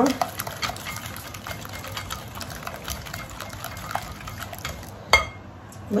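A silicone-coated balloon whisk beats eggs, sugar and liquids in a glass bowl, a fast irregular run of light clicks and sloshing, to dissolve the sugar into the eggs. One sharper knock comes near the end as the whisking stops.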